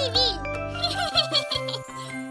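Short children's music jingle for the closing logo: held notes with a run of quick tinkling high notes in the middle, starting to fade near the end. A brief high-pitched voice is heard right at the start.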